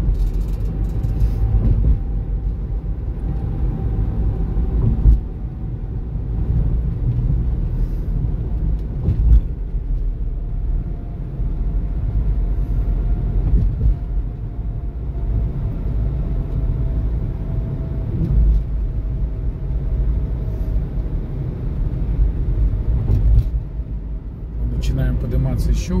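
Car road and tyre noise heard from inside the cabin while driving: a steady low rumble with a faint hum, broken by a few short thumps.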